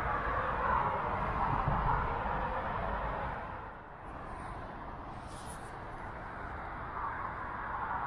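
Road traffic crossing the bridge deck overhead, heard from underneath: a steady rush of cars and trucks that is fuller for the first three seconds or so and eases off a little about halfway through.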